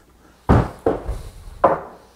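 Large resawn wooden slabs knocking and bumping as they are handled and turned over: three separate wooden thunks, the first the loudest.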